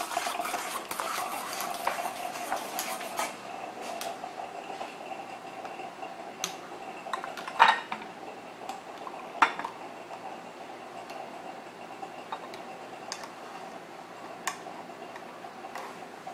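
Metal spoon stirring foamy, sugared Cuban coffee in a small stainless-steel pot: quick scraping and clinking for about three seconds, then a few separate sharp taps of the spoon on the pot. A faint steady hum runs beneath.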